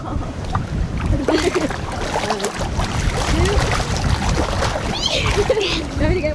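Pool water splashing and sloshing continuously close by as two people move about in it, with a heavy low rumble under the splashing.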